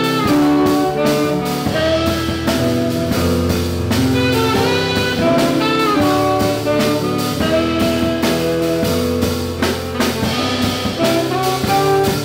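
Live jazz band: a saxophone playing a melody of held notes over plucked upright bass, electric guitar and a drum kit keeping time.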